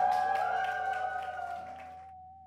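The last chord of a small swing band with archtop guitar and double bass ringing out and fading away, a high note held over it. Scattered clapping and cheers from the room come with it.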